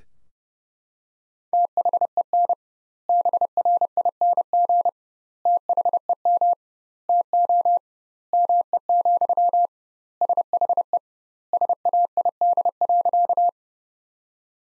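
Morse code sent at 30 words per minute as a single steady beep keyed into dots and dashes, in seven word-groups with long gaps between them, starting about a second and a half in. It spells out the sentence "Then bring them to me, she said" a second time.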